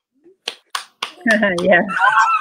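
A quick run of finger snaps, about four a second, given as approval of what was just said.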